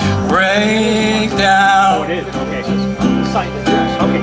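A small band playing live: ukulele, accordion and electric bass, with held melody notes over a steady low bass note.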